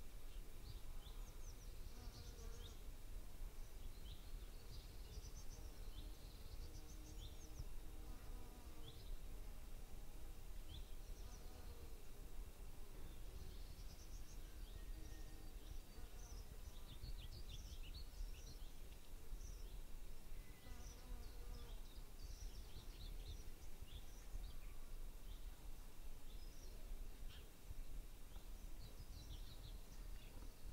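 Faint outdoor animal ambience: many short high chirps and calls, scattered irregularly, over a low steady rumble.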